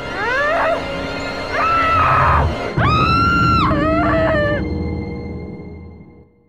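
Four long, high screams over ominous music, the first sliding upward and the others held. The sound fades out near the end.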